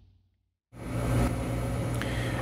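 Silence, then after about two-thirds of a second a steady machine hum fades in: a running electric motor whirring.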